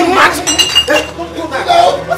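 Glass bottles clinking, with a ringing clink from about half a second to a second in, among people's voices.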